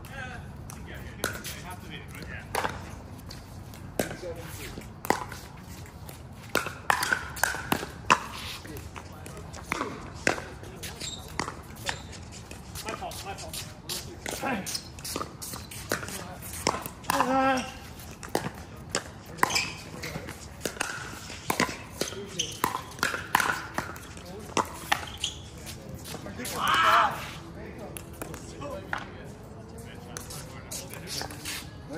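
Pickleball rally: repeated sharp pops of paddles striking the plastic ball, at an uneven pace, with shoes scuffing on the hard court. A few short shouts and calls from the players come in between.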